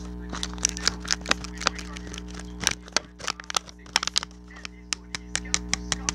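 A rapid, irregular series of sharp clicks and taps, a few a second and sometimes in quick clusters, from a small object being handled to make ASMR sounds, over a steady low hum.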